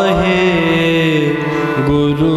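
Sikh kirtan music: a sustained melody with gliding notes over a steady held low note.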